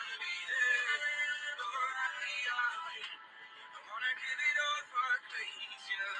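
A pop love song with a sung vocal line, thin and without bass; the singing lets up briefly about halfway through.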